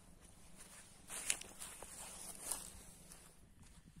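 Faint footsteps through grass and weeds, with two louder steps, one at about one second in and one at about two and a half seconds.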